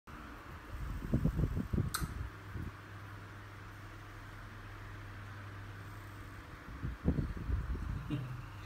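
Steady low mechanical hum with a faint hiss. Muffled low thumps and rustling come about a second in and again near the end, with a sharp click near two seconds in.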